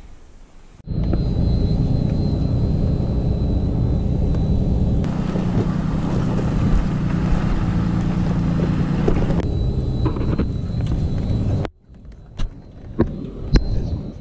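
Dodge 2500 pickup truck driving down a rough dirt trail, its engine running with a steady low rumble that starts suddenly about a second in. Near the end it drops to a quieter stretch with a few sharp knocks.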